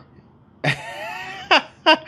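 A man's brief breathy chuckle: a long airy exhale, then two short sharp bursts of laughter.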